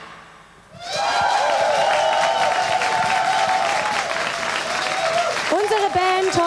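Studio audience applauding, the clapping starting about a second in after a brief lull. A long held voice-like call sounds over the clapping, and a voice starts speaking near the end.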